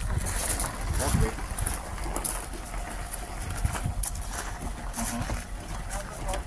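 Wind buffeting the microphone, a fluctuating low rumble, with indistinct voices in the background.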